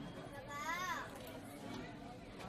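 A child's brief high-pitched vocal sound, rising then falling in pitch, about half a second in, over a low murmur of background voices.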